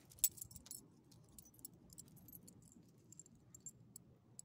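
Small metal clinks and jingles of a dog's collar hardware and leash clip as the dog moves, with one sharp click about a quarter second in.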